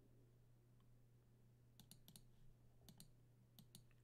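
Near silence with a faint steady low hum, then several faint, short clicks at a computer in the second half.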